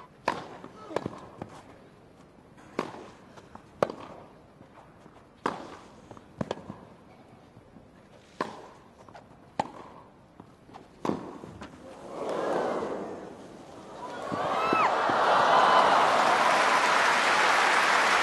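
A tennis rally on a grass court: crisp racquet-on-ball strikes about every second, mixed with ball bounces. About twelve seconds in, the crowd rises in a murmur of excitement. Then cheering and applause take over as the point ends, louder than the rally.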